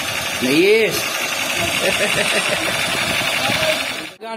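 A battery-powered toy laser gun's electronic firing sound: a steady buzz with a fast pulsing ripple that runs on while the trigger is held. A short rising-and-falling note sounds about a second in.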